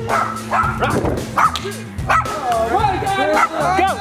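Background music with steady low notes, with short, high yelps over it that come thicker near the end.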